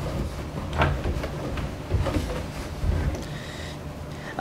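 A microfiber cloth damp with Armor All being rubbed over the plastic control panel and knobs of a Peavey RQ2310 mixing console: an irregular rubbing and scuffing, with a few louder scuffs about one, two and three seconds in.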